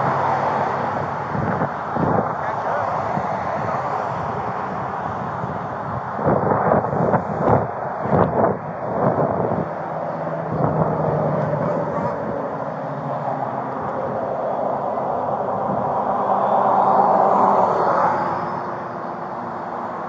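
Steady road traffic and engine noise, with a low engine hum, heard at the roadside. A run of louder knocks and rustles comes about six to ten seconds in, and a vehicle passes, swelling and fading, near the end.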